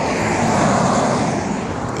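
A car passing on the road: tyre and engine noise swelling to a peak about a second in, then easing off.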